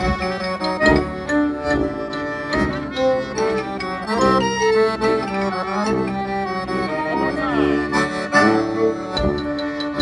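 Live klezmer band playing a tune on accordion, violin, clarinet, marimba, tuba and drum, with a steady beat a little more than once a second.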